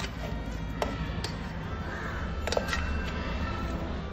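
A spatula scraping mashed potato out of a steel pot into a glass bowl, with a few light knocks of the spatula against the pot.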